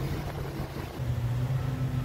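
A boat's engine running steadily under way, a low hum that grows a little stronger about a second in, over a haze of wind and water noise.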